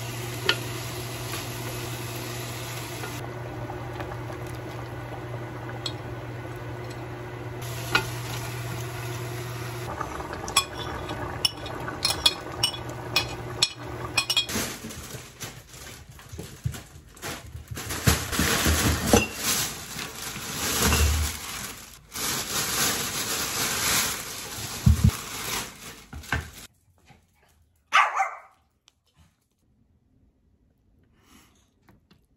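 A pot of red stew simmering over a steady low hum, with a few clicks and knocks. Then a plastic shopping bag rustles and crackles in irregular bursts for about ten seconds, before things go quiet near the end.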